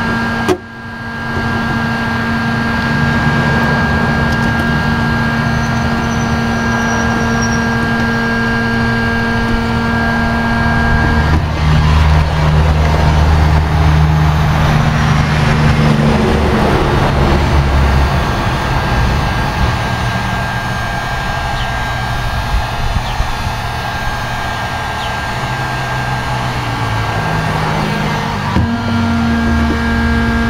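A 1500-watt heat gun running on high: a steady fan-motor hum with the rush of blown air. The sound grows louder and rougher for several seconds in the middle, then settles back to the steady hum.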